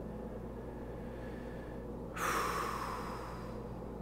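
A man's audible breath, a hissy nasal exhale or sigh while he pauses to think, starting suddenly about two seconds in and fading over about a second and a half. A low steady hum of room tone runs under it.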